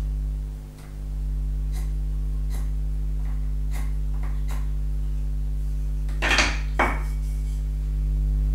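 Pencil marking wood: light ticks and scratches as the pencil point is drawn against the edges of the wooden finger-joint template. A little after six seconds come two louder knocks as the wooden pieces are handled.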